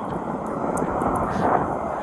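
Passing road traffic: a steady rush of tyre and engine noise that swells a little around the middle.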